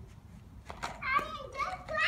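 A young child's voice calling out, high-pitched, starting about a second in, with a couple of sharp clicks just before it.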